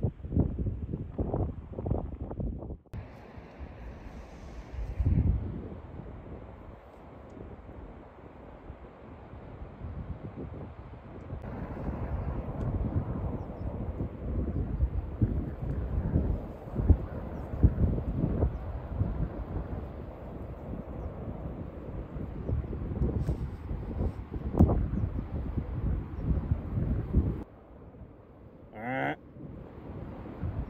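Wind buffeting the microphone in uneven gusts, a low rumbling roar that surges and drops. Near the end it falls quieter and a short wavering, rising tone sounds once.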